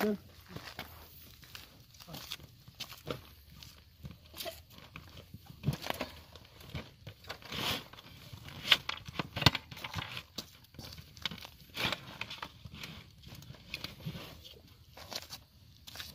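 Irregular clicks, knocks and rustling, as of objects and gear being handled.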